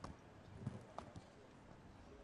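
Near silence broken by a few faint, scattered clicks and knocks: one at the start, a duller and slightly louder knock a little past half a second in, and two lighter clicks around a second in.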